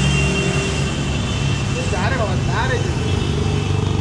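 A motor vehicle engine running steadily with a low hum and a thin high tone in the first couple of seconds. A faint voice is heard about two seconds in.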